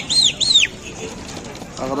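A bird chirping: three short, high, arched chirps in quick succession, stopping within the first second. A man starts speaking near the end.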